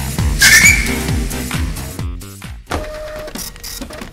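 Funk-style background music with repeated sliding, falling bass notes, a loud short squeal about half a second in; the music stops abruptly about two seconds in, leaving quieter scattered sounds.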